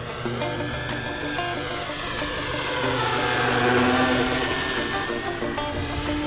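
Electric RC biplane's motor and propeller whine swelling as the plane passes, bending in pitch and loudest about four seconds in, heard under background music.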